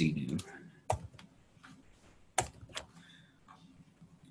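Computer keyboard keystrokes: a few separate clicks spread over the seconds, the two loudest about a second and a half apart, as a short edit is typed.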